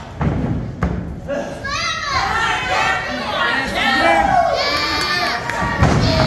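Thuds of wrestlers' bodies hitting the wrestling ring mat, two within the first second and a loud one near the end, while a small crowd with many children shouts and cheers.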